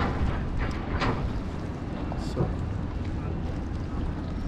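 Wind buffeting the microphone, a steady low rumble, with a few brief voice sounds over it.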